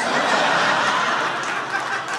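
Audience laughter: many people laughing together in a steady wash that eases off slightly near the end.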